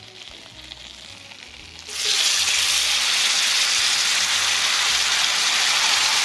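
Sliced onion, chopped green pepper and tomato tipped into hot butter and olive oil in a cast iron pan: a faint sizzle, then about two seconds in a sudden loud, steady sizzle as the vegetables hit the fat.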